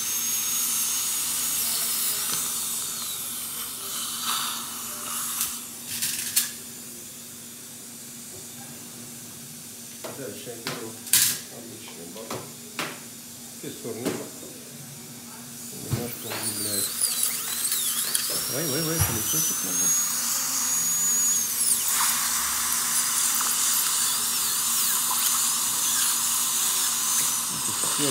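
High-speed dental air-turbine handpiece whining over a hiss of air, water spray and suction as it drills out the filling over an implant crown's screw-access channel. The whine stops about three seconds in, leaving a quieter stretch with scattered clicks. Past halfway the turbine spins up again in a rising whine, holds it for several seconds, then drops away while the hiss continues.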